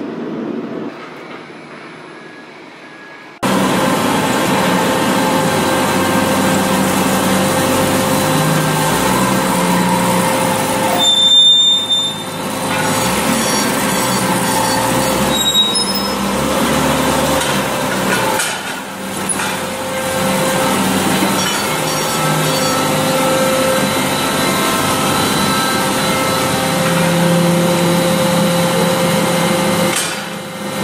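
Steady industrial machinery noise in a hot-forging shop, a loud continuous din with several constant hums running through it. It jumps abruptly louder a few seconds in and dips briefly a few times.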